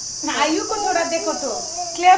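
Steady high-pitched insect chorus, like crickets, running throughout. A voice speaks over it from shortly after the start.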